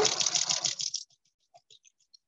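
Sewing machine stitching a seam, the needle going in a rapid, even rhythm, then stopping about a second in; a few faint clicks follow.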